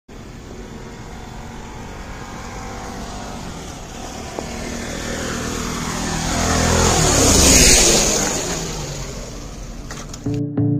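Motorcycle approaching and passing close by on a wet road: the engine grows louder up to about seven and a half seconds in, then drops in pitch and fades as it goes past, with tyre hiss loudest as it passes.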